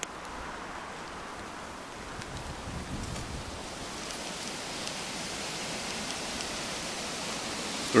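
Steady outdoor noise: a hiss without distinct events that grows slightly louder and brighter toward the end.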